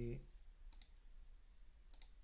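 Faint computer mouse button clicks: two quick clicks just under a second in, and another click near the end.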